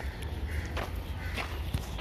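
Footsteps on a dirt path, about one every 0.6 seconds, over a low rumble of wind on the microphone, with voices in the background.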